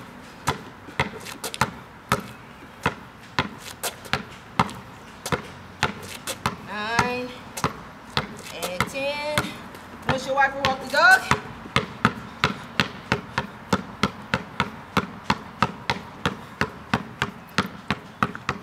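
Basketball dribbled on a concrete driveway in a run of steady, sharp bounces about two a second, coming a little quicker in the second half. The player is working crossovers in front and dribbles behind the back.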